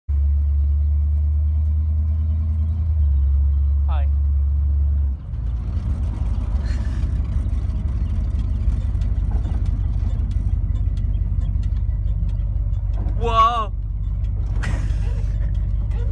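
A 1972 Dodge Charger's engine running loud while cruising, heard from inside the cabin. A steady low drone gives way, after a brief dip about five seconds in, to a pulsing, uneven rumble.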